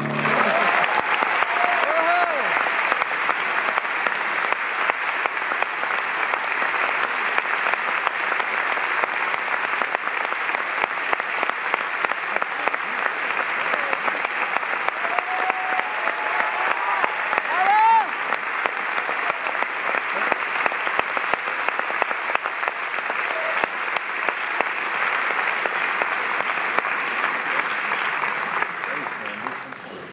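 Large audience applauding steadily, with a few rising whistles and calls over the clapping. The applause thins out near the end.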